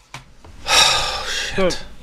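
A loud, breathy gasp lasting about a second, typical of someone acting panicked.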